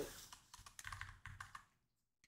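Computer keyboard keystrokes: a quick, faint run of about ten key clicks over a second and a half, stopping shortly before the end.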